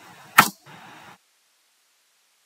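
A single sharp click about half a second in, over faint background hiss that then cuts off to dead silence.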